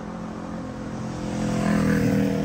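A passing vehicle's engine drones steadily over road noise, growing louder toward the end.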